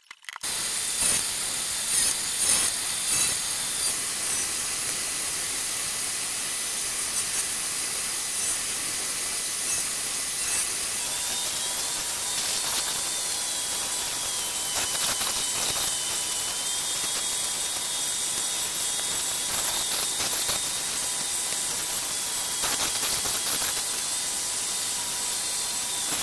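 Bench belt sander running steadily while a painted pallet-wood block is pressed onto the belt and sanded. A faint, wavering high whine joins about halfway through.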